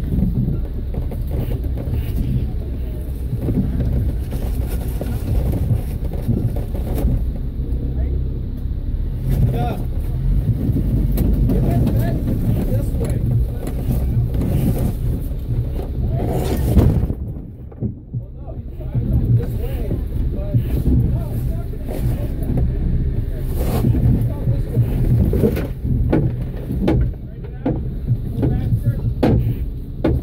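Off-road vehicle's engine running at low revs while crawling over rocks, with scattered knocks in the later part; the sound drops out briefly about seventeen seconds in.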